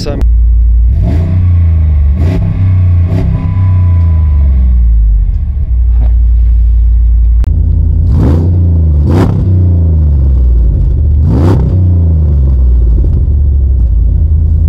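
A 2008 Jeep Commander's 5.7 L Hemi V8 running with a steady low rumble and revved in short blips: three quick revs in the first few seconds, then three more from about eight seconds in.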